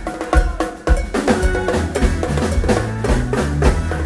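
Live funk band playing, with drums and hand percussion hitting out a busy rhythm over the bass and horn. The band drops back briefly and comes in again with a hit about a second in.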